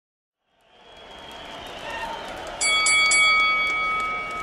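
Crowd noise fading in and swelling, then a boxing ring bell struck three times in quick succession about two and a half seconds in. Its ring holds on steadily.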